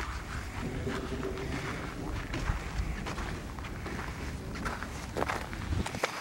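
Footsteps walking on a dirt road, irregular soft steps over a steady low rumble.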